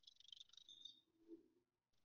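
Near silence: a pause between speakers on a video call, with only faint room tone and a few faint ticks in the first second.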